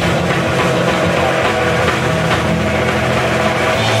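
Live rock band playing loudly: distorted electric guitar and bass guitar over a drum kit, with bass notes shifting through the passage.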